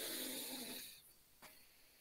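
A person's noisy breath sound over a computer microphone, fading out about a second in, followed by a faint click.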